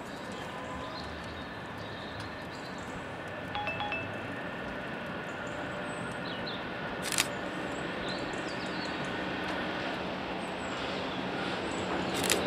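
Class 73 electro-diesel locomotives hauling a train approach from a distance: a low, steady rumble that grows slowly louder. Faint bird chirps are heard over it, and there is a single sharp click about seven seconds in.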